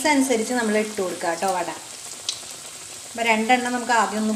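Green-gram parippu vada patties deep-frying in hot oil in a steel wok, with a steady sizzle. A woman's voice talks over the frying at the start and again near the end, leaving the sizzle heard alone in the middle.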